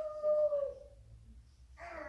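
A single drawn-out, high-pitched vocal cry, like a small child's or baby's voice, lasting about a second and falling slightly in pitch as it fades. A low steady room hum runs underneath.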